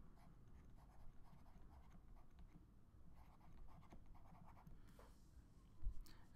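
Very faint scratching of a stylus writing a word on a drawing tablet, otherwise near silence. There is a brief low thump just before the end.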